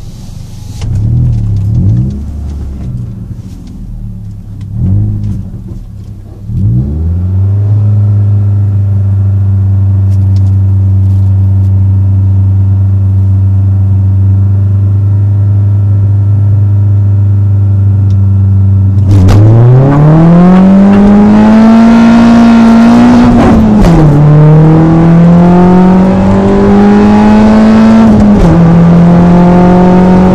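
Car engine heard from inside the cabin during a quarter-mile drag run. It gives a few short revs, then is held at raised revs for about twelve seconds at the start line. About two-thirds of the way through it launches, and the engine note climbs through the gears with two upshifts, each a sudden drop in pitch.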